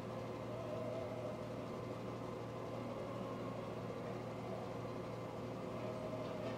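A steady low hum that does not change, with faint steady tones above it.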